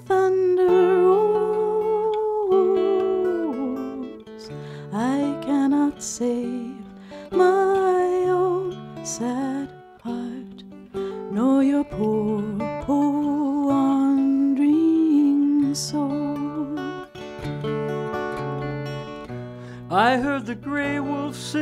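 Acoustic guitar picked under slow, held sung vocals in a folk song, the voice lines wavering and gliding between notes.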